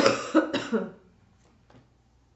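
A woman coughing three times in quick succession into her fist, over within about a second: a lingering cough from a throat that has not yet fully recovered.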